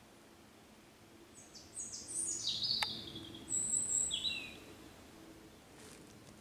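A songbird sings one song of quick notes that step down in pitch, lasting about three seconds. A single sharp click sounds about halfway through.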